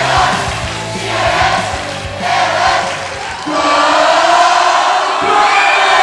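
Rock music plays until about three and a half seconds in, then stops. A loud crowd shouting and cheering takes over.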